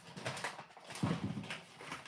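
Handling noise from rummaging: a run of short knocks, clicks and rustles as things are moved about, with a duller low knock about a second in.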